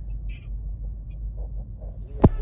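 Low, steady rumble inside a car cabin, as from the car's engine running, with a few faint small sounds over it.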